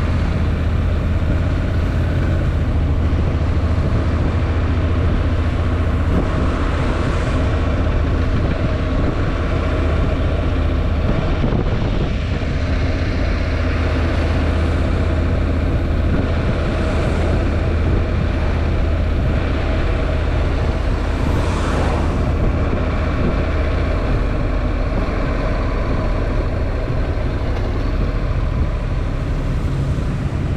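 Honda NC750X's parallel-twin engine running at a steady cruise, a constant low drone mixed with wind rush and tyre noise on a wet road.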